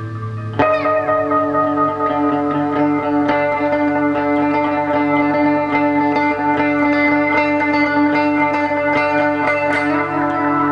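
Trebly electric guitar played through an amplifier with reverb: after a low amp hum, a sharply picked chord comes in about half a second in, then ringing picked notes over a steady held tone.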